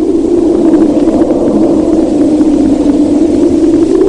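A loud, steady low drone with a faint hiss above it, unchanging in pitch.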